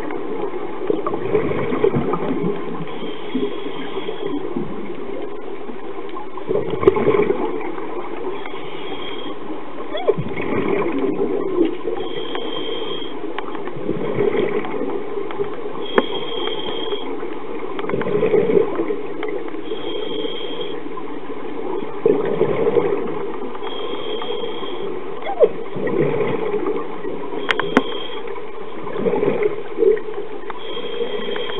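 Scuba regulator breathing heard underwater: a short high hiss-whistle on each inhale, then a gurgling rush of exhaled bubbles, about one breath every four seconds over a steady underwater hiss.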